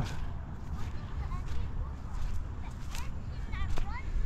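Wind buffeting the microphone with a steady low rumble, and faint footsteps on sand. A faint high voice calls briefly near the end.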